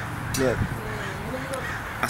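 Crows cawing, the loudest call about half a second in, along with a man's spoken word.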